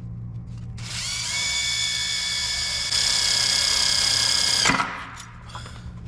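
Cordless drill/driver driving a screw into a hardwood deck board: a steady motor whine starting about a second in, getting louder around the halfway point, then cutting off with a short knock as the screw seats.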